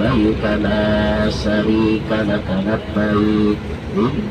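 A man chanting into a microphone over the bus's loudspeakers, in long held notes with short breaks between phrases, over the low rumble of the bus engine.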